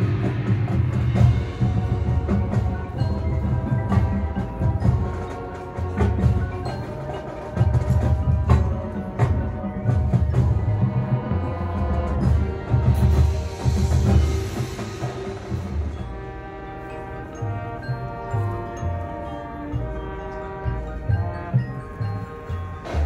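A high school marching band playing its halftime show, with drums pulsing underneath and marimba and other mallet percussion on top. Near the end, steadier held chords come through.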